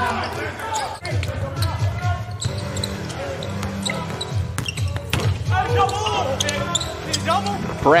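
A basketball bouncing repeatedly on a hardwood court during live play, with players' voices calling out over a steady arena background.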